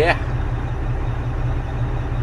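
Semi-truck's diesel engine idling steadily while it warms up, a low, evenly pulsing rumble heard inside the cab.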